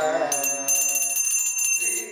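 Small brass pooja hand bell (ghanta) rung rapidly and continuously, a high shimmering ring starting about a third of a second in. Behind it a devotional song plays, its singing dropping out early and coming back near the end.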